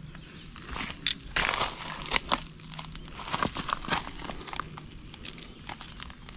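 A hand tool and fingers scraping and raking through gravelly dirt and broken glass, brick and metal scraps, giving a run of irregular scrapes, crunches and clicks. Two short high peeps come near the end.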